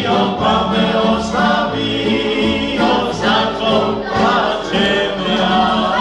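Live tamburitza band playing a Croatian folk song, several men singing together over plucked strings and a bass line.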